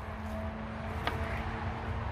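Steady distant rumble of traffic on a busy dual carriageway, with a single light knock about a second in.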